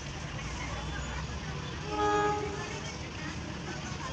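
Diesel locomotive horn giving one short blast of about half a second, about two seconds in, as the opposing train approaches the station, over a steady low hum.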